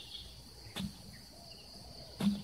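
A hoe blade striking the soil once, a dull thud just under a second in, over a steady high-pitched drone of insects.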